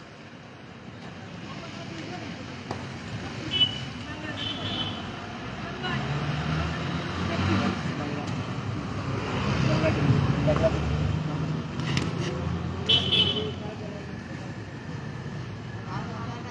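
A car driving past on the street, its sound swelling over several seconds in the middle and then fading, with voices in the background.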